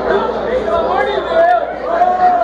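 Crowd chatter: many voices talking over one another at once, with no music playing.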